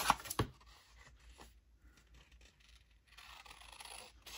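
Scissors cutting through patterned craft paper: a few sharp snips in the first half second, then fainter, irregular rasps of the blades sliding along the paper.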